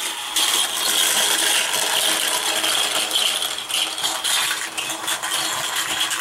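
A pack of Disney Pixar Cars Micro Drifters, tiny toy cars that roll on a ball bearing, clattering together as they run down a plastic gravity race track and are steered round its outside lane by the bumper. A steady, dense rattle of many small clicks.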